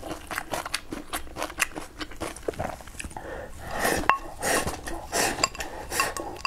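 Close-miked eating: chewing and mouth sounds, with chopsticks clicking repeatedly against a ceramic rice bowl. Louder bursts come about four seconds in and again near five, as food is shovelled from the bowl into the mouth.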